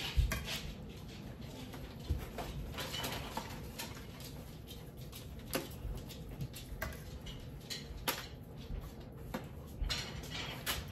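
Metal tongs clicking and aluminum foil crinkling as pieces of turkey breast are lifted from a foil-lined roaster and set on a serving platter, a scatter of light taps and clacks.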